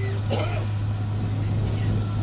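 A steady low hum runs throughout, with faint voices in the background near the start.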